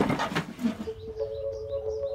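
Birds chirping in short, repeated chirps over a steady, held two-note music chord that comes in about a second in. A few short clicks come in the first half-second.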